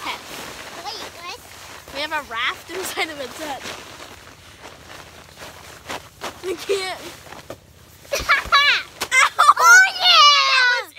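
Children's voices without clear words: squeals and laughter in short bursts, loudest and highest near the end, with rustling and bumps as they grapple over an inflatable lounger.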